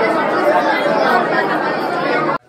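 A congregation praying aloud all at once: many overlapping voices speaking together, no one voice standing out.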